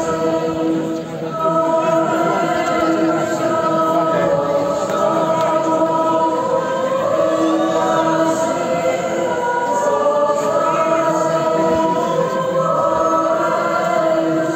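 Choir-like intro music over the venue PA: held vocal chords whose notes change every second or two, with no drums, as heard from the crowd.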